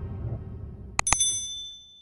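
Two quick click sound effects about a second in, followed at once by a short bright bell-like ding that rings on briefly: a notification bell sound effect. Underneath, a low background bed fades out toward the end.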